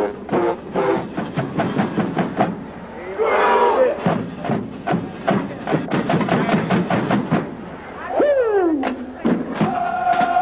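Marching band drumline playing a fast, rhythmic cadence of drum strokes with crash cymbals. A short wavering pitched sound comes about three seconds in, and a falling pitched glide about eight seconds in.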